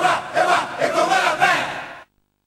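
A group of voices chanting a traditional Congolese dance song together over steady percussion beats, fading out near the end.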